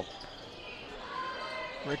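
Gymnasium sound of a basketball game in play: a low crowd murmur and court noise, with a basketball being dribbled on the hardwood floor.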